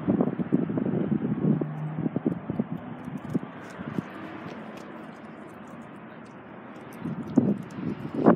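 Scattered knocks and rustling from a handheld phone being carried while walking, over a faint steady outdoor hiss; the knocks thin out after about three seconds and pick up again near the end.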